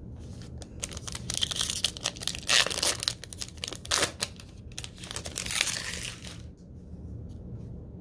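Foil wrapper of a trading card pack being torn open and crinkled: a dense crackling that starts about a second in and stops a little after six seconds.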